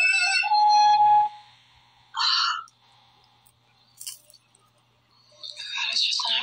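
Horror film soundtrack: a shrill rising tone holds steady and cuts off suddenly about a second in. Near quiet follows, broken by a brief hiss and a click, and then a louder breathy sound near the end.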